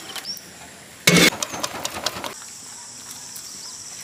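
A short, loud noisy burst about a second in, followed by a few clicks. Then, about halfway through, a steady high-pitched insect drone, typical of crickets, takes over.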